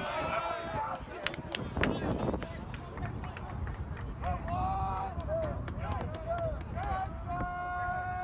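Indistinct spectator voices in the stands, with a long drawn-out call near the end and a few sharp clicks or claps about one and a half to two seconds in, over a steady low rumble.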